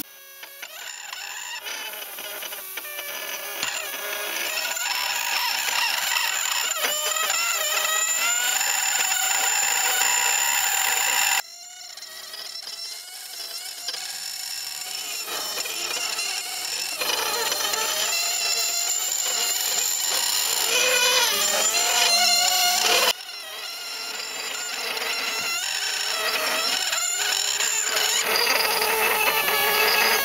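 Pneumatic engraving pen (air scribe) buzzing as its tip is worked into a plaster cast. The pitch wavers and slides as the pressure on the tip changes, and the sound breaks off abruptly and restarts twice.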